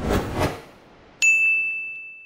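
Logo sting sound effect: a brief rushing swish, then a single bright ding a little over a second in that rings on and fades away.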